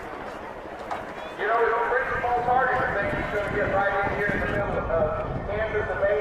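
A voice over a public-address loudspeaker, distant and echoing, starting about a second and a half in after a quieter moment.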